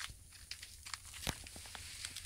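Faint rustling of dry leaves and twigs with a few scattered light clicks, the sharpest a little past the middle: someone moving and handling the camera close to the ground in dry undergrowth.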